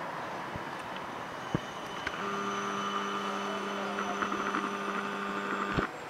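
Electric city tram running close by over street noise: from about two seconds in, a steady low hum with a higher whine above it. It cuts off suddenly just before the end.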